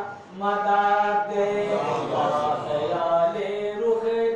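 A male voice chanting an Islamic devotional recitation in long, held notes that step from pitch to pitch, with a short break for breath just after the start.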